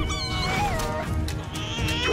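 A cartoon slug creature chattering in high, squeaky chirps that glide up and down in pitch, over background music.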